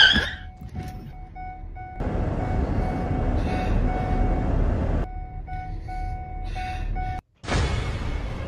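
A car driving, with road and engine noise heard from inside the cabin, loudest for a few seconds in the middle. Faint background music with short repeated tones plays over it. The sound cuts out for a moment near the end.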